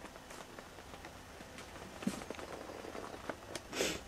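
Quiet room tone with a few faint knocks and ticks, one a little louder about halfway through, and a short hiss just before the end.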